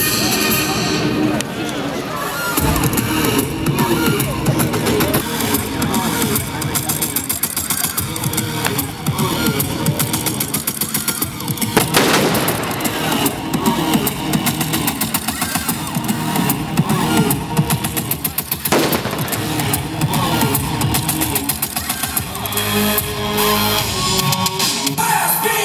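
Music playing over bursts of gunfire-like bangs from a staged military demonstration, the shots fired as blanks and pyrotechnics. A louder blast about twelve seconds in comes as a smoke grenade goes off, and another follows near nineteen seconds.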